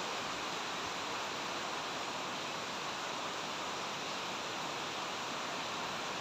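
Heavy typhoon rain falling steadily, an even, constant hiss.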